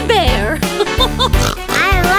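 Cartoon character voices making wordless, sliding-pitch vocal sounds over upbeat children's background music with a steady beat.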